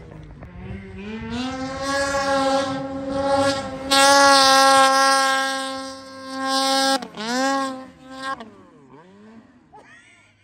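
Snowmobile engine under hard throttle in deep powder: its pitch rises, then holds steady at high revs and gets louder about four seconds in. It cuts off sharply about seven seconds in, revs up and down once more, then fades.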